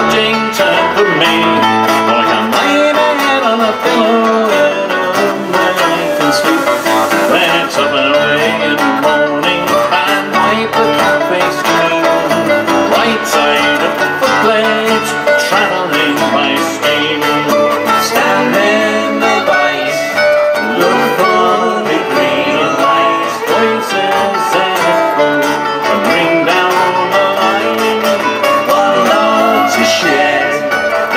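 Acoustic folk band playing live through a PA: fiddle and strummed acoustic guitars in an instrumental passage, with a tambourine.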